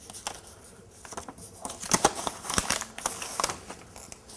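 A sheet of printer paper rustling and crinkling as it is folded with one hand, in an irregular run of crackles that grows busier and louder past the middle.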